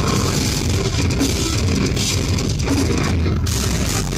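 Rock band playing loudly live: electric guitars and a drum kit.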